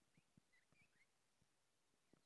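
Near silence, with a few faint, short bird chirps in the first second and some soft low knocks.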